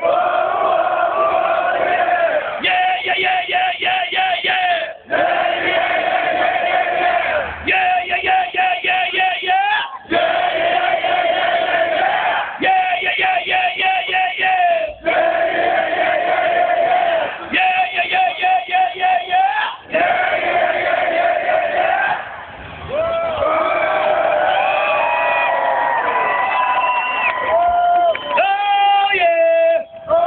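Large concert crowd chanting and singing back short vocal phrases in call-and-response with a rock singer, a new phrase about every two and a half seconds. Near the end a single voice slides up and down in pitch.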